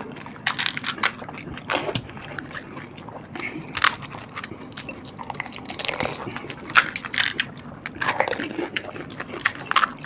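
Crisp pani puri shells cracking and crunching as they are broken open and bitten, in irregular bursts of crunches, with chewing in between.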